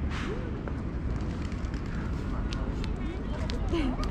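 Busy outdoor ambience: faint voices of people nearby over a steady low rumble on the microphone, with scattered light clicks.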